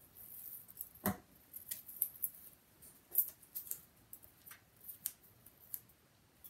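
Paper and adhesive tape being handled and pressed down on a paper page: scattered light crinkles and clicks, with one louder knock about a second in.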